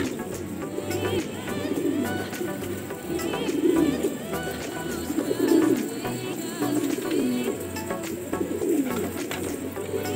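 A flock of domestic pigeons cooing, many calls overlapping one after another in a continuous low warble.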